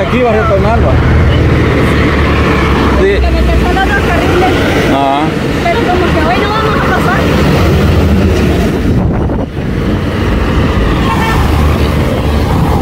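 Road traffic passing close by on a highway, cars and trucks going past with a steady low engine and tyre rumble. People's voices break in over it now and then.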